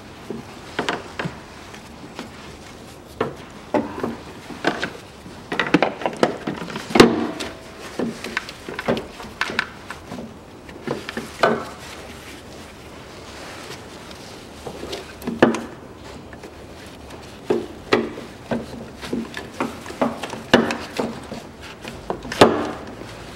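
A plastic coolant expansion tank is handled and pushed into its mount in a car's engine bay: irregular hard-plastic knocks, clunks and rubbing. The loudest clunk comes about seven seconds in and another about fifteen seconds in.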